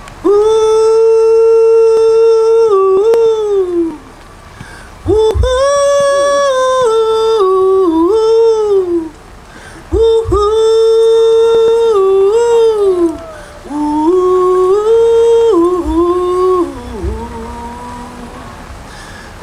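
A man hollering into a stage microphone: three long wordless calls. Each is held on a steady note, then breaks and slides down in steps, in a yodel-like way.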